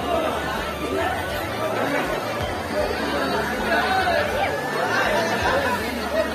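Several voices talking at once, a chatter of people with no single clear speaker.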